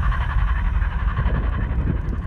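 Film soundtrack sound effects: a deep, continuous rumble with a rough, higher-pitched noise layered on top.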